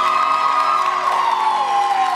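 Audience cheering and whooping, many voices in long gliding 'woo' calls, over a chord of the backing track still held underneath.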